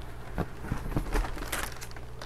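Soft rustling and crinkling of a cardboard shoe box and its paper wrapping being handled, with a few light taps.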